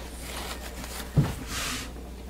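Hand handling an acrylic soap cutter: a knock about a second in, then a short rustle.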